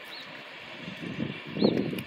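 A bird chirping, a short arched note repeated about once a second, over steady outdoor background hiss. A brief, louder low rush of noise comes near the end.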